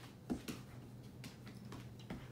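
A puppy's claws and body knocking and scrabbling on a hardwood floor as it spins chasing its tail: two sharp knocks about a third and half a second in, then a few lighter ticks, over a low steady hum.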